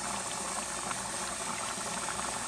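Pot of black beans boiling in their dark cooking liquid, a steady bubbling and crackling.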